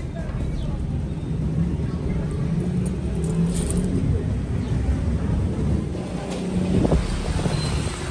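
Street ambience dominated by a steady low rumble of road traffic.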